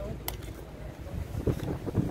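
Wind buffeting the microphone as a low rumble, with one sharp click about a third of a second in and a few soft bumps in the second half.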